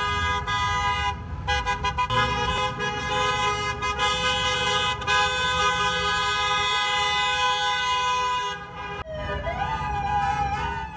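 Car horns of parading Jeeps honking loudly and almost without a break, several held notes overlapping, with short gaps about a second in and around five seconds. Near the end a rising wail, like a siren starting up, comes in.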